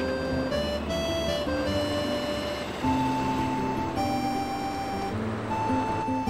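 Background music: a simple melody of held notes over a low bass line, the notes changing every half second or so.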